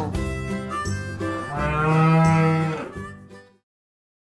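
A bull mooing: one long low call about a second and a half in, over light background music. The sound drops to silence shortly before the end.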